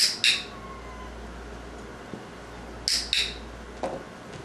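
Hand-held dog-training clicker pressed twice, each press a sharp double click-clack: once at the start and again about three seconds in, marking the puppy's correct response for a food reward. A brief softer noise follows just before the end.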